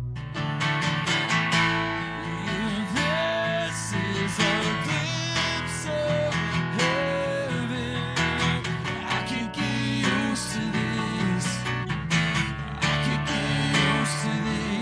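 Acoustic guitar strummed in a steady rhythm, starting suddenly at the beginning, with a man's voice singing a slow melody over it from a couple of seconds in.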